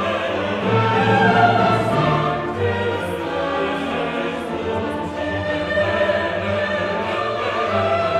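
Classical choral music: a choir singing slow, sustained lines with orchestral accompaniment.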